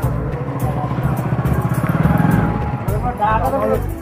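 A small motorcycle engine running, growing louder to about two seconds in and then fading, as if passing by.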